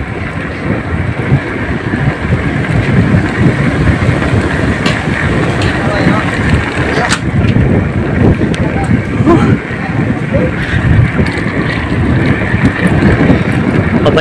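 Wind buffeting the microphone of a camera on a moving bicycle: a loud, steady, uneven rumble, with sharp ticks about five and seven seconds in.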